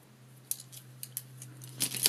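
Light clicks of paintbrush handles knocking against one another as a handful of brushes is sorted and laid down, a few scattered taps at first and a quicker cluster near the end.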